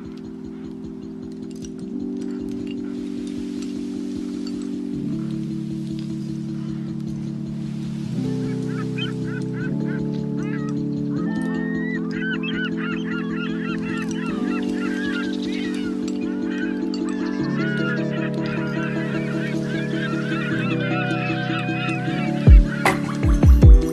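A lofi track opening with soft, sustained keyboard chords that change every few seconds. From about nine seconds in, a chorus of bird calls, goose- or duck-like, joins the chords and grows busier toward the end.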